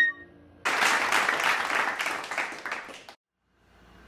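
The last flute note dies away, then applause from a group of people runs for about two and a half seconds, fading, before cutting off abruptly.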